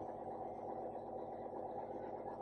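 Steady low hum of a small electric pump motor running without a break.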